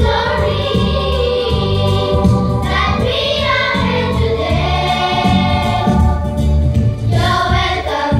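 A children's choir singing an English song into stage microphones over an instrumental backing with a steady bass line.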